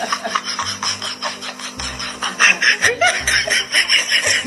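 Laughter in rapid repeated bursts, with background music underneath.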